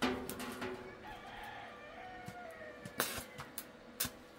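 A rooster crowing: one long crow of about three seconds that starts abruptly, rises and then falls in pitch on its drawn-out last note. A sharp click stands out about three seconds in.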